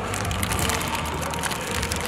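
Protein-bar wrapper crinkling with small scattered crackles as it is handled, over a steady low hum.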